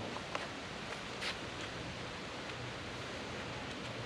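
Quiet, steady background hiss with no distinct source, and one faint click about a second in.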